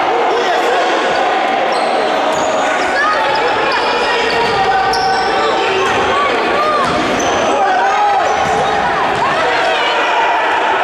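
Indoor futsal play on a hard sports-hall floor: sneakers squeak repeatedly in short chirps, the ball thuds on kicks and bounces, and players call out to each other, all carrying in the large hall.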